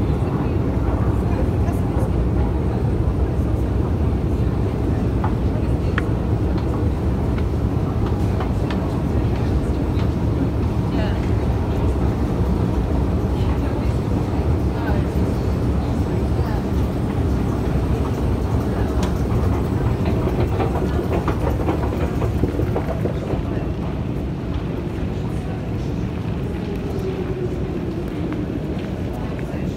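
Underground station escalator running: a steady low mechanical rumble with scattered light clicks, easing a little in the last few seconds.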